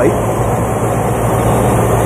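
Carbureted motorhome engine idling steadily, running on a freshly fitted Chinese knock-off Edelbrock carburetor, with a constant low hum.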